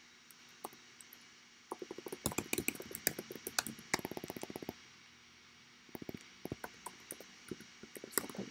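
Computer keyboard typing: a quick run of keystrokes starting about two seconds in and lasting some three seconds, then a short pause and a few more keystrokes about six seconds in.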